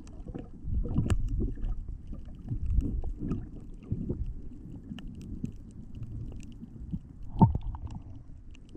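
Underwater sound through the camera: a muffled, fluctuating low rumble of water moving around the diver, with scattered small clicks and crackles, a sharper knock about a second in and the loudest one near the end.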